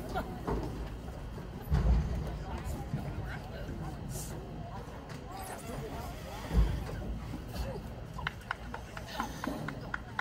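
Indistinct distant voices and sideline chatter, with two low thumps, about two seconds in and again near seven seconds, and a quick run of sharp clicks or claps near the end.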